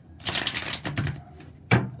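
Tarot deck being shuffled by hand: a fast run of card flicks through most of the first second, then a few single flicks, and a sharp thump near the end, the loudest sound.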